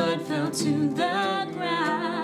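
A woman singing a slow worship-song line, 'And as Your blood fell to the ground', over strummed acoustic guitar chords that ring on underneath.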